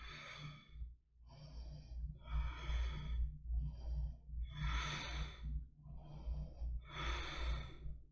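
A woman breathing audibly in a steady rhythm of slow inhales and exhales, about seven breaths in and out, while she holds a seated yoga twist. A steady low hum runs underneath.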